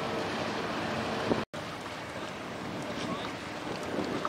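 Wind on the microphone over river ambience, with a faint steady hum from a workboat's engine. The sound cuts out completely for an instant about one and a half seconds in.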